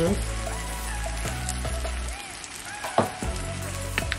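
Onions and garlic frying in butter in a pan, a steady sizzle under faint background music, with a single sharp knock about three seconds in.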